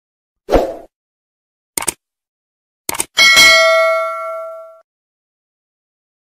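Subscribe-button animation sound effects: a short thud, then a click and a quick double click, followed by a bright bell ding with several ringing tones that fades out over about a second and a half.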